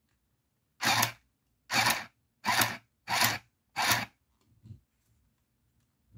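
Handheld mini sewing machine stitching lace onto a paper card in five short mechanical bursts, about two-thirds of a second apart.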